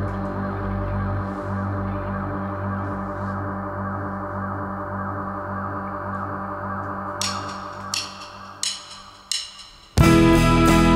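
A sustained, pulsing musical drone, beating about three times a second, that slowly fades. Near the end come four evenly spaced sharp clicks about two-thirds of a second apart: a count-in for the next song.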